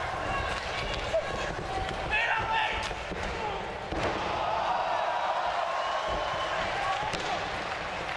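Wrestlers' bodies slamming onto a wrestling ring's mat, a few sharp impacts with the loudest about four seconds in, over continuous shouting voices.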